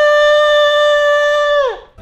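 A man's voice holding one long, loud sung note, which slides down in pitch and dies away just before the end.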